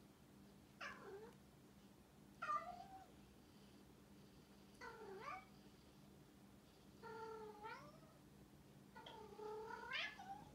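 A domestic cat meowing five times, about every two seconds, each call gliding in pitch. The last two calls are longer and drawn out.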